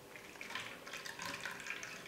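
Blended cucumber juice trickling and dripping faintly through a fine mesh steel strainer into a stainless steel bowl.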